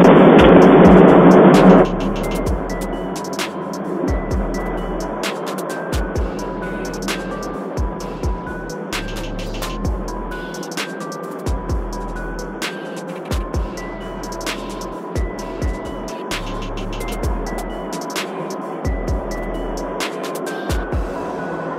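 Loud, distorted boom of a chemical plant explosion picked up by a porch camera's microphone, cutting off about two seconds in. Background music with a steady beat runs under it and through the rest.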